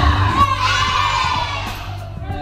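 A class of children singing a chanted song together over a backing beat, holding one long call that slowly falls in pitch.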